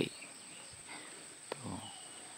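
Quiet outdoor ambience with a faint, steady, high-pitched insect drone, and one small click about one and a half seconds in.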